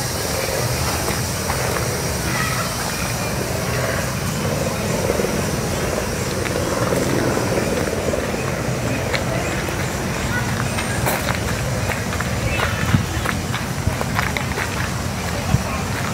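Steady outdoor background noise with indistinct voices, and a few light clicks near the end.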